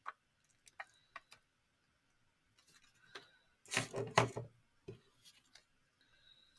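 Clear stamps being handled on their plastic backing sheet: a few light clicks in the first second and a half, then a louder cluster of handling noise a little under four seconds in, and one more click soon after.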